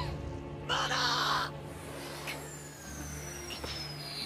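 Battle sound effects from an anime film soundtrack: a loud, rough burst about a second in, then a thin high whine gliding slowly downward over a steady low hum.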